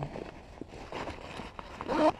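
Soft rustling and a few faint clicks from a Cordura fabric front pack being handled, its pocket zippers and straps moved about.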